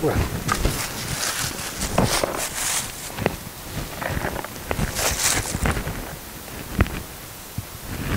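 Close rustling of dry leaf litter and ramp leaves being pushed aside by hand, with a few sharp knocks from the digging knife or handling.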